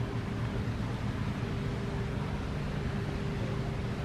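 Steady background hum and hiss with a faint constant tone, like distant machinery running.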